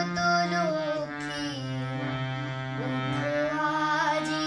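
A boy singing a Bengali song, accompanying himself on a harmonium whose held reed chords sound steadily under his voice. The harmonium's low note shifts down a little over a second in.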